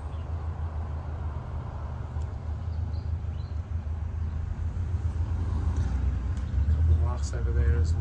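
Low, steady rumble of passing road traffic, growing louder near the end.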